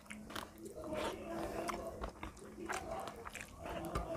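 Close-miked eating sounds: a person chewing a mouthful of rice, with many short wet mouth clicks and smacks, while fingers mash rice and daal on a paper plate.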